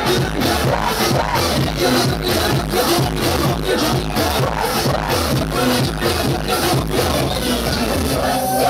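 Electronic dance music from a DJ set, played loud over a nightclub's sound system with a steady fast beat and a repeating bass line.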